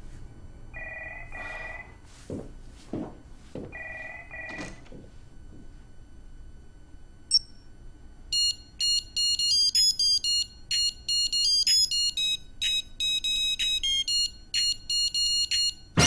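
A digital wristwatch alarm beeps, from about 8 s in, in a fast, jumpy tune of high electronic tones. Before that come two pairs of short lower beeps, about a second in and again about four seconds in, with a few clicks between them.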